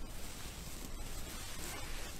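Straw rustling and crackling as a pig burrows its head into a straw pile.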